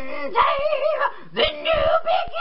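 Female vocalist singing sustained notes with vibrato into a studio microphone, the line broken by short gaps and yelpy breaks.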